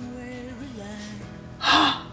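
Background music playing, then near the end a woman's short, loud gasping exclamation.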